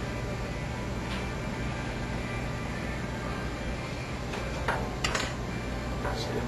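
Light metal clicks and clinks of steel bearings being handled, a faint one about a second in and a few sharper ones between four and five seconds in, over a steady low hum.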